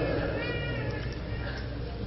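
A pause in the talk. A steady low hum runs under it, and a faint, high-pitched wavering cry comes about half a second in.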